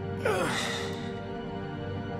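A drugged man's groan, one glide falling in pitch about a quarter second in, over steady held music.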